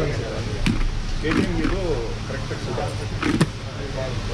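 Steady low rumble of road traffic under short snatches of indistinct voices, with a sharp click about three and a half seconds in.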